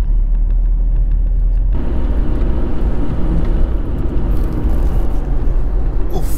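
Cabin noise of a Tata Tiago diesel hatchback on the move: a steady low rumble of engine and road. About two seconds in, the noise turns fuller, with a steady hum added.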